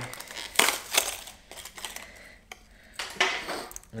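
A fishing lure's rigid plastic blister pack being pried open and crinkled, in several crackling bursts with a single sharp click about two and a half seconds in.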